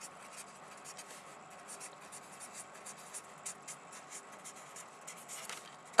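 Handwriting: a writing tool scratching on a surface in quick, irregular short strokes, faint.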